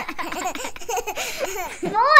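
People laughing in a continuous run of short, quick giggles.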